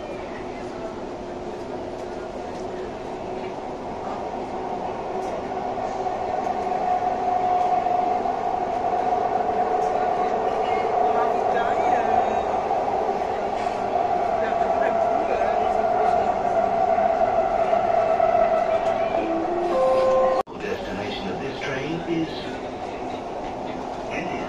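Dubai Metro train running, heard from inside the car: a steady ride noise with a humming tone that grows louder over the first several seconds and holds, then cuts off suddenly about twenty seconds in, leaving quieter running noise with voices.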